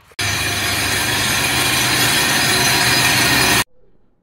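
Laboratory sieve shaker running with a stack of metal sieves: a loud, steady mechanical noise with a low hum underneath. It starts sharply just after the start and cuts off abruptly about three and a half seconds in.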